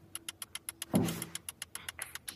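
Countdown-timer sound effect ticking quickly and evenly, about eight ticks a second, over a faint steady hum, with a brief voice sound about a second in.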